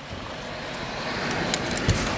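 Cabin noise of a Dodge van moving off, the engine and road noise rising steadily as it picks up speed. A few light clicks and a low thump come near the end.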